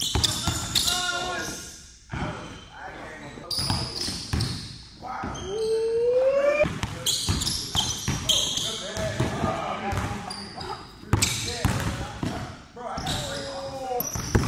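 A basketball dribbled on a hardwood gym floor, a run of sharp bounces with sneakers squeaking in between, echoing in a large hall.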